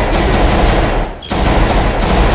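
Rapid handgun fire, many shots in quick succession, with a brief pause a little over a second in before the shooting resumes.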